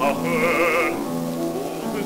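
A baritone voice from a c. 1928 gramophone record sings a held note with a wide vibrato for about a second, with piano accompaniment carrying on under and after it.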